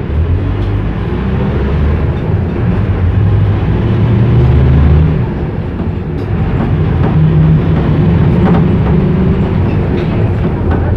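Loud, steady low rumble of a moving public-transport vehicle heard from inside the passenger cabin. A low hum in it rises and falls, and a few faint clicks sound now and then.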